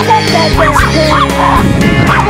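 A chihuahua yipping and baying in a few short cries over loud pop music with a steady beat.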